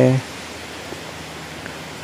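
The tail of a spoken word, then a steady background hiss with no other sound.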